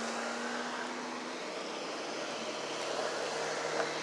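Steady noise of road traffic, with a faint engine hum.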